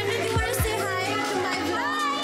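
Children's voices chattering and laughing over background music, with a couple of short knocks about half a second in.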